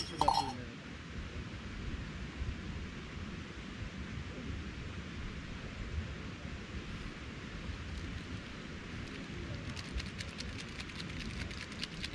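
A single metallic clink of a spork against the metal cook pot just after the start, then a steady faint hiss. Near the end comes a rapid run of fine crinkling ticks from a small ramen spice packet being handled.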